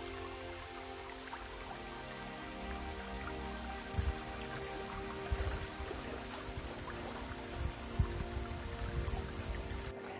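Soft background music with long held notes, over the even flowing of a shallow chalk stream running across gravel. A few low thumps come through around the middle and later on.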